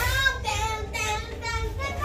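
A child singing in a high voice, the pitch wavering in short phrases.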